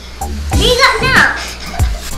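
Short, high-pitched exclamations from a person's voice, with music in the background.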